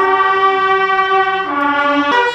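Fire brigade bugle corps sounding a fanfare: several bugles hold one long chord, which shifts to new notes near the end.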